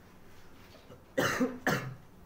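A person coughing twice in quick succession, a little over a second in, the two coughs about half a second apart.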